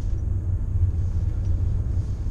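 Steady low rumble inside the cabin of a 2017 Bentley Bentayga driven at track speed: engine and tyre noise heard from within the car, with no rise or fall in pitch.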